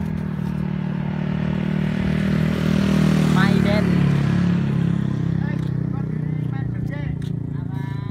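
Engine of a radio-controlled paramotor running steadily, held up by hand before launch; it grows louder toward the middle and settles slightly lower after about four seconds.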